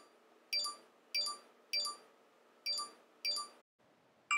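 WeChat for Mac new-message alert sounding six times in quick succession, short bright dings about half a second apart, as a burst of incoming messages arrives.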